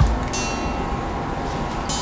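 Background film music with a bell-like chime ringing briefly about a third of a second in.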